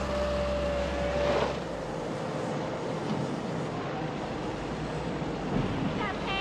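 Sugar mill cane-handling machinery running: a steady whine over a low hum, which fades out about a second and a half in, then a steady mechanical noise.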